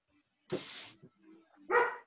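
A dog barking twice in short bursts, heard through a video-call microphone.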